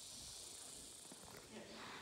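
Near silence: faint background hiss, with a thin high-pitched haze that fades about a second and a half in.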